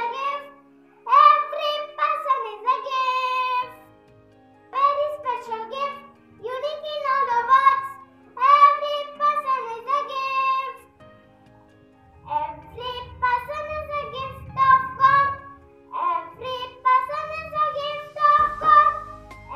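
A child singing a children's song in short phrases with brief pauses between them, over a steady keyboard-like backing track.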